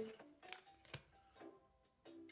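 Near silence: faint background music with a few soft clicks of trading cards being handled.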